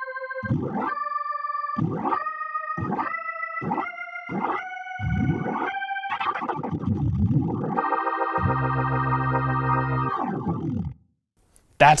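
Hammond B3-style organ sound on a Nord Stage 3 playing a run of quick upward glissandos, each sweeping up the keys and landing on a held high note that climbs step by step. Near the end a longer gliss lands on a full chord held over a low bass note for about three seconds, then cuts off.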